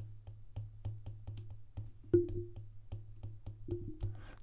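A stylus tip tapping and clicking on an iPad's glass screen during handwriting: a quick, even series of light clicks about four a second, with one louder knock about two seconds in.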